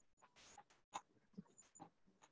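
Near silence: room tone over an online-class audio feed, with a few faint, brief sounds scattered through it.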